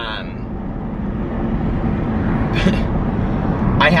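Steady low road and engine rumble inside the cabin of a moving car, with a brief breathy sound about two and a half seconds in.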